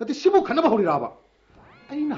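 A voice speaking in a high, wavering pitch for about a second, a brief pause, then the voice sliding upward in pitch as it starts the next words.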